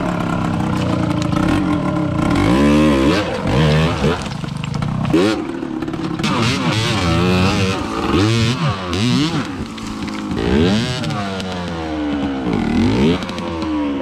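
KTM enduro dirt bike engine revving up and down over and over in short bursts of throttle as the bike is ridden up a rocky, log-strewn gully.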